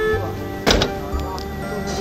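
Background music with a single sharp thunk about two-thirds of a second in: a car door being shut.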